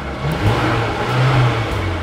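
Mercedes-AMG GLB 35's turbocharged four-cylinder engine revved once while stationary. The pitch rises about half a second in, holds, and falls back near the end.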